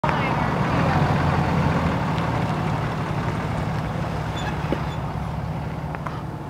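A motor vehicle's engine running steadily at low speed, its low hum slowly fading.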